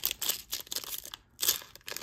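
Foil wrapper of a Topps baseball card pack crinkling and tearing as it is opened and the cards are slid out, with a brief pause just past a second in before a final crinkle.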